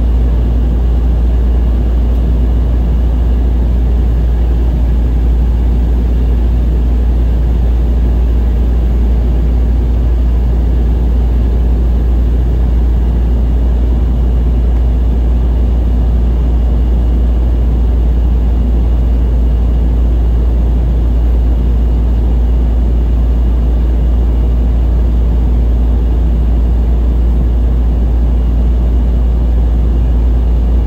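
Steady in-flight cabin noise of an Embraer 190SR's General Electric CF34 turbofans and airflow, heard inside the cabin by the wing, with a deep constant rumble under an even rush and a faint steady high whine.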